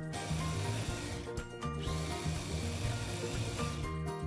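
Electric food chopper motor running, its blades grinding pork belly and cooked rice into a paste in a glass bowl, with a short break about a second and a half in.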